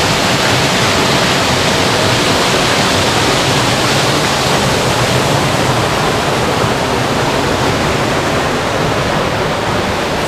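Small waterfall pouring down a rock face into a pool: a steady, loud rush of falling water.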